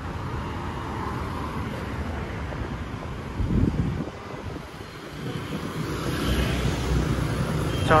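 Road traffic on a city street: cars passing with engine and tyre noise. It grows louder over the last few seconds as a vehicle draws near with a steady engine hum.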